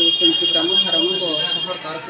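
A steady, high-pitched alarm-like tone, several pitches held together, that stops shortly before the end.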